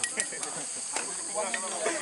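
A few light scrapes and clicks of a metal spatula stirring rice in a large wok, over a steady high hiss, with faint voices in the background.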